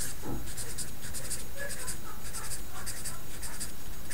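A felt-tip marker writing on paper: a quick run of short scratchy strokes, several a second, as a row of digits is written out.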